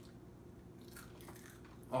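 Faint crunching of dried edible mole crickets being bitten and chewed.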